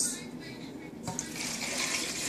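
Water poured from a small saucepan into a pot of raw tomatillos, a steady pour starting about a second in, filling the pot to cover the tomatillos for boiling.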